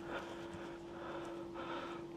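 Quiet, with a faint steady hum and soft handling sounds of fingers peeling the charred skin off a roasted poblano chili.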